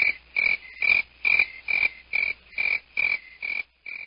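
Short, high-pitched pulses repeated evenly, a little over two a second, each with a click, in a muffled recording without its top end. They stop near the end.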